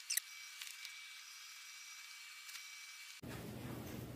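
Faint high-pitched squeaks and hiss from a recording played back at very high speed, over a thin steady high tone. Ordinary room sound cuts back in about three seconds in.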